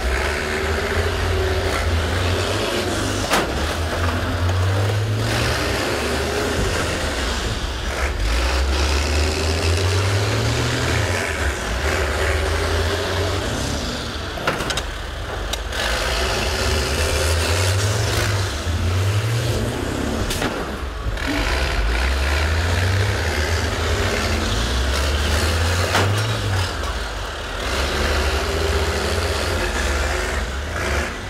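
School bus engine revving up and down over and over, its note climbing every few seconds, with an occasional sharp knock.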